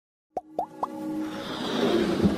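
Animated logo intro sting: three quick pitched plops about a quarter second apart, each a little higher than the last, followed by a music bed that swells up.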